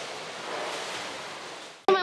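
Water splashing and churning in an indoor swimming pool as a child swims and others kick their feet in the water; the sound cuts off abruptly just before the end.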